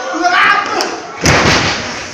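A wrestler's body slamming onto the padded wrestling ring canvas: one heavy thud about a second in, followed by a short low rumble from the ring. Spectators shout just before it.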